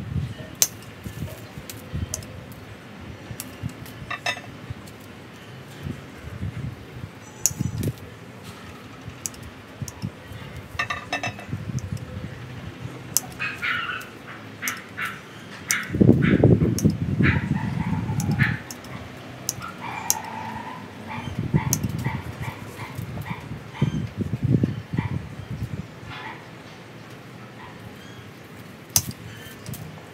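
Pruning shears snipping through small ficus twigs and leaves: repeated short, sharp clicks, irregularly spaced. Midway there is a louder low rumble lasting about two seconds, with runs of short pitched sounds around it.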